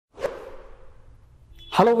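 A whoosh sound effect that hits suddenly and fades away over about a second and a half, followed near the end by a man saying "hello".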